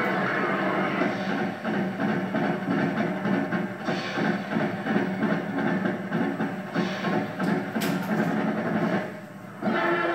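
High school marching band playing a rhythmic full-band passage, with a short drop in volume just after nine seconds before the band comes back in loudly.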